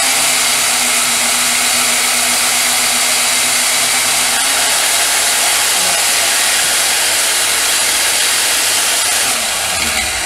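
Benchtop band saw running steadily while cutting an angled spacer from a Delrin plastic block. A low hum under the noise stops about halfway in, as the blade comes through the cut, and the saw runs on.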